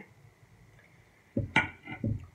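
A ceramic dinner plate set down on a table: a few short, soft knocks close together near the end, after a quiet stretch.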